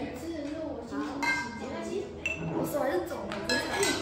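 Glassware and dishes clinking at a set dinner table, with a couple of short ringing clinks among children's chatter.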